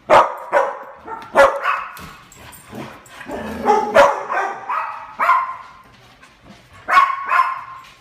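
Dog barking repeatedly for its supper, about ten barks in irregular bunches.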